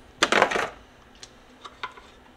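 A short clatter on a bamboo cutting board as cut-up steak is handled, followed by a few light clicks.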